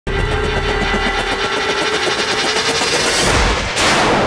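Dramatic TV-serial background score: a rapid, evenly pulsing figure over held tones, rising into a loud rushing whoosh just before the end.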